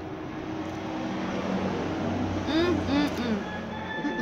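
A person makes three or four short hummed 'mm' sounds while tasting, about two and a half seconds in. Under them is a background noise that swells in the middle and eases near the end.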